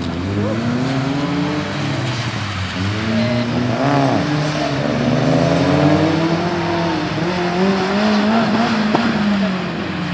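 Subaru Impreza WRX STI's turbocharged flat-four engine revving as the car slides around a wet skidpan, its pitch climbing and falling again every few seconds, with one sharp click near the end.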